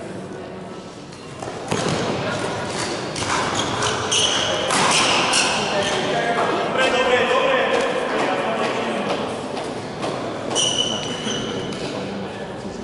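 Echoing sports-hall background of voices and chatter, with scattered knocks and a couple of short high-pitched tones.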